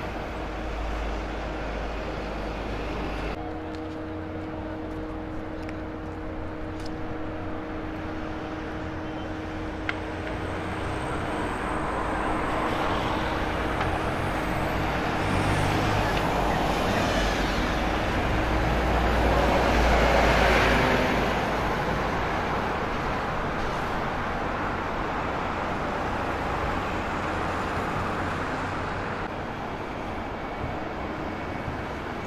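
City street traffic dominated by buses. A bus engine runs with a steady drone, then a bus passes close by, growing louder to a peak about twenty seconds in and then fading.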